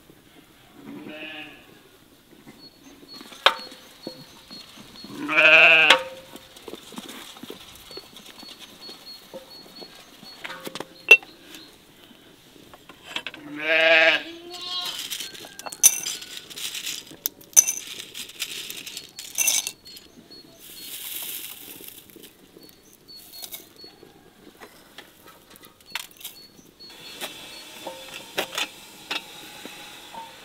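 Sheep bleating: two loud bleats with a wavering pitch, about five and fourteen seconds in, and a fainter one near the start, among scattered light clicks.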